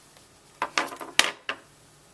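Wood-mounted rubber stamp and plastic ink pad being handled: a quick run of about five light knocks and clacks a little past halfway, one sharper than the rest, as the stamp is inked and the pad put down.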